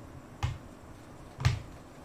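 Two short, sharp clicks about a second apart, each with a small low thump.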